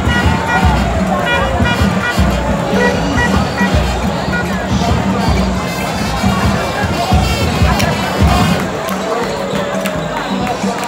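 A national anthem playing during the pre-match line-up, with voices singing along over stadium crowd noise.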